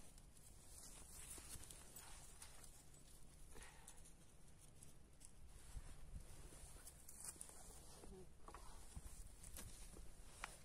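Near silence, with faint scattered rustles and small knocks of clumpy clay soil being pushed and pressed by gloved hands around a freshly transplanted plant.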